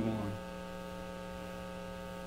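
Steady electrical mains hum: a constant low buzz with several even overtones, unchanging throughout.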